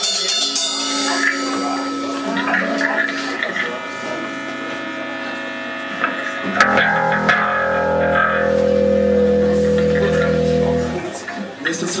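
Electric guitar played through a Marshall amplifier, with chords struck and left to ring. About six and a half seconds in, a loud low chord is struck and held for some four seconds before it is cut off.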